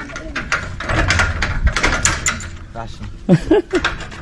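People's voices in low talk, with a few light metal clicks as a hand works a padlock on a barred steel cell door. A short voiced sound, like a laugh, comes about three and a half seconds in.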